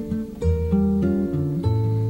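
Acoustic guitar playing chords and bass notes in an instrumental gap between the sung lines of a Portuguese-language bossa nova song, with a new chord struck about half a second in.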